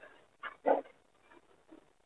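Two brief vocal sounds from a person, close together about half a second in, in an otherwise quiet room.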